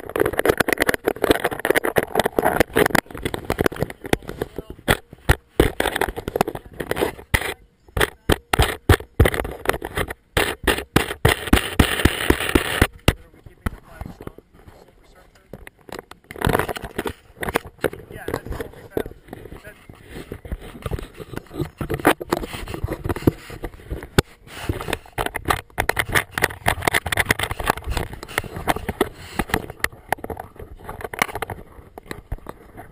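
Action-camera housing rubbing and knocking against clothing and hands while it is carried, giving many irregular clicks, scrapes and rustles, with muffled voices at times.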